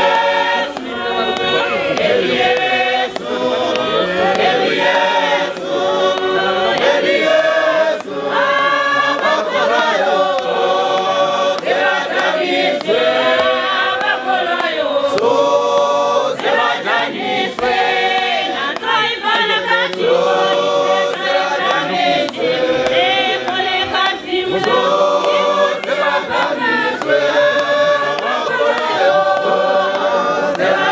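Church congregation singing a cappella, women's voices to the fore, with a lead voice amplified through a microphone and loudspeaker. A sharp clap comes about once a second.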